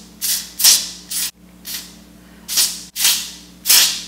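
Ebin Wonder Lace Bond aerosol adhesive spray, sprayed in about seven short hissing bursts, each a fraction of a second, along the lace front of a wig to glue it down at the hairline.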